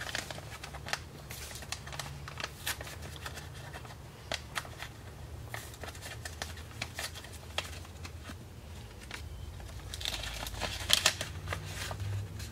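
A paper seed packet being handled and opened by hand: irregular crinkles, rustles and small tearing clicks, with a louder burst of crinkling near the end, over a faint low hum.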